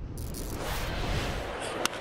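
A broadcast transition sound effect: a low rumble with a hissing whoosh that fades out after about a second and a half. Near the end comes a single sharp crack of a bat hitting a baseball.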